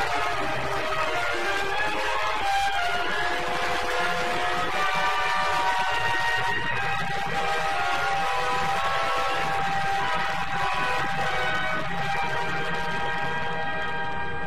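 Film soundtrack music from an old film print: long sustained chords of several held notes that change slowly.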